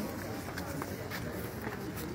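Indistinct voices over steady outdoor background noise.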